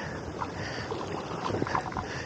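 Steady rush of a shallow stream's water flowing around the angler, with some wind noise on the microphone.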